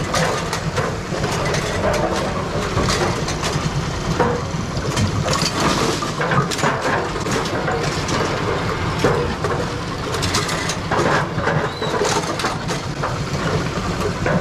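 A Brunswick bowling pinsetter running through a cycle: a steady mechanical clatter of gearbox, linkages and pins, with many knocks and clicks throughout. It is a test cycle after adjusting the gearbox stop collar (dashpot), to check that the reset lever's pin clears the collar's lip.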